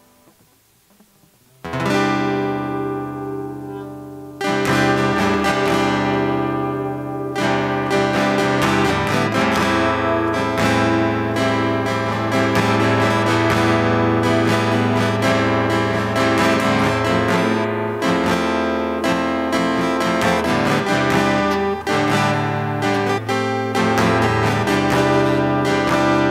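Acoustic guitar strummed. After a short near-silent pause a chord rings out and fades, another follows a couple of seconds later, and then steady rhythmic strumming takes over as a song intro.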